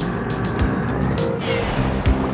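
Cartoon rocket blast sound effect: a steady rushing whoosh with a faint falling whistle near the end, over children's background music.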